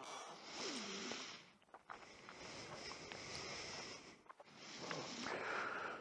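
A person breathing close to the microphone: three drawn-out breaths, each a second or so long, with short pauses between them.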